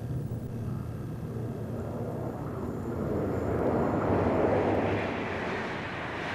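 German ICE high-speed electric train passing at speed, its rushing noise building to a peak about four to five seconds in as the power car and coaches go by close.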